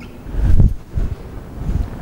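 Low rumbling puffs of wind or handling noise on the microphone, loudest about half a second in, with smaller ones after.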